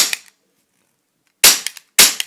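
Sig Sauer 1911 CO2 airsoft pistol firing: two sharp shots about half a second apart, the first about one and a half seconds in and the second at the very end. The slide is fixed, so each shot is a single report with no blowback action.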